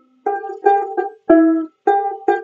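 Banjolele (banjo-ukulele) strummed in a short riff: about five chords in two seconds, each ringing briefly before the next.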